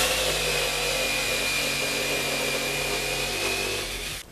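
Electric jigsaw cross-cutting a 2x4: the motor starts abruptly and runs at a steady pitch as the blade saws through the wood, then stops as the cut finishes at the end.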